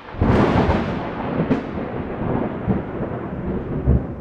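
A thunderclap breaks just after the start, then rolls on as a long rumble that slowly fades, with a second sharp crack about a second and a half in.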